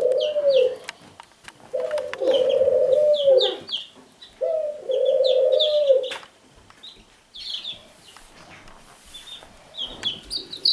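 Baby chicks peeping: many short, high chirps repeating throughout. Over them, three long, level cooing tones from a child's voice, each a second or two long, make up the loudest part of the first six seconds; after that only the peeping goes on, quieter.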